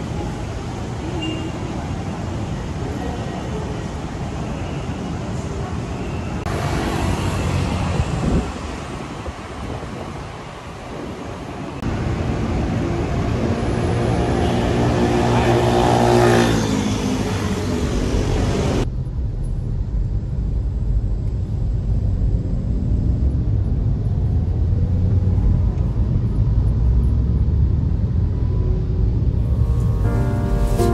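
City street traffic, with one vehicle's engine rising in pitch as it accelerates past. About two-thirds of the way through, this changes suddenly to the steady, dull low rumble of a car being driven, heard from inside the car.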